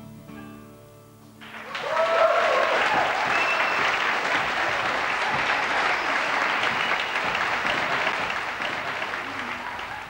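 The last notes of a song fade out, and about one and a half seconds in an audience breaks into applause, with a few brief cheers near its start; the clapping then goes on steadily.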